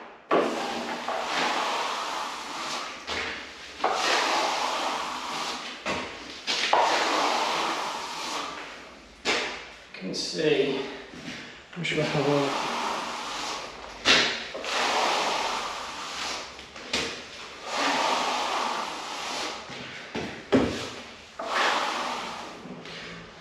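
Plastering trowel scraping across a freshly skimmed plaster wall in repeated strokes, one every second or two, each starting loud and fading: a dry pass compressing the still-damp plaster.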